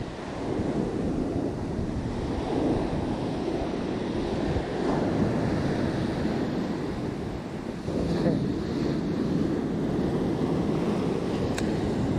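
Ocean surf breaking and washing up the beach, with wind buffeting the microphone. A wave swells louder about eight seconds in.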